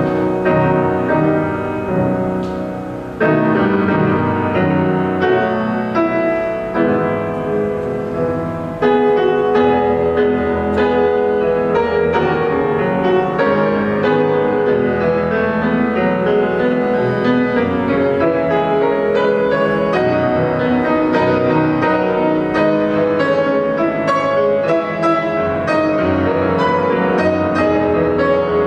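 Solo grand piano improvisation, with sustained chords that step up in loudness a few seconds in. From about nine seconds in it turns louder and busier, a fast stream of quick notes over the chords.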